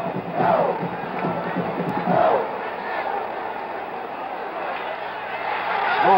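Large stadium crowd cheering and shouting, a dense, steady din of many voices, with single yells rising above it about half a second in and again around two seconds.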